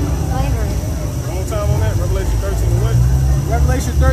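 A man's voice talking, with other voices, over a steady low rumble.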